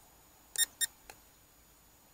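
Two short, high-pitched electronic beeps about a quarter second apart, followed by a faint click, from the drone's controls as video recording is switched back on.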